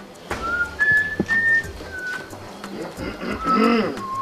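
A person whistling a short tune of four clean, held notes in the first half, followed near the end by a brief louder call with a wavering pitch.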